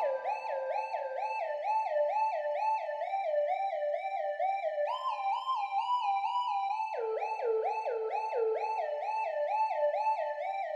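A lone electronic synth tone warbling in a siren-like way, its pitch dipping and swooping back up about three times a second. The whole figure steps up in pitch about five seconds in, then drops lower about two seconds later.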